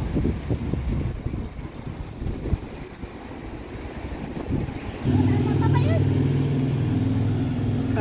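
Low rumbling wind noise on the microphone, then about five seconds in the steady low hum of a road vehicle's engine comes in suddenly and holds to the end.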